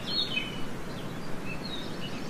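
Small birds chirping in short, high notes over a steady background hiss.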